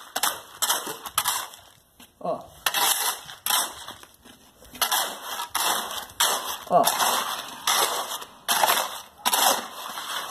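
Shovel jabbing and scraping through wet, coarse-gravel concrete in a series of short gritty strokes with pauses. The stone is being tamped down by hand to compact the concrete around a rebar column.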